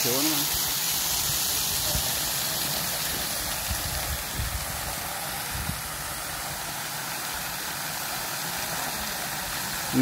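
Water jetting up from a burst underground water pipe and crashing back down as spray: a steady rushing hiss. It eases slightly in loudness over the first few seconds.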